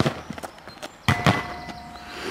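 A football hitting a metal goal frame: a sharp knock at the start, then about a second in another hit that leaves the metal ringing for most of a second.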